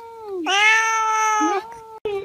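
Domestic cat meowing at close range: one long, drawn-out meow starting about half a second in and lasting about a second, with softer calls just before and after it. The sound cuts off abruptly at the end.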